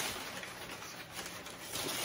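Crumpled brown kraft packing paper rustling and crinkling as it is pulled out of a cardboard box.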